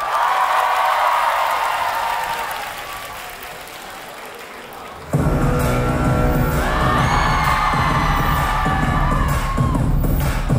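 Loud dance-performance music mix in a hall: the bass cuts out at the start, leaving held high notes and audience cheering that fade away over about five seconds. A heavy beat then kicks back in suddenly, about five seconds in, with a new track carrying sung or synth notes.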